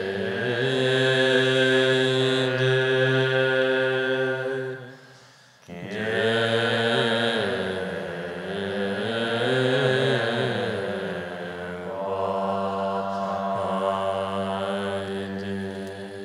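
An assembly chanting a Tibetan Buddhist prayer together in long, drawn-out deep notes. About five and a half seconds in there is a brief pause for breath, then the chant resumes with the pitch rising and falling before settling into steady held notes.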